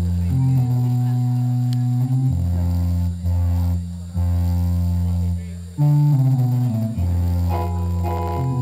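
Band playing the instrumental opening of a song: a guitar and a bass guitar hold long chords that change every second or two.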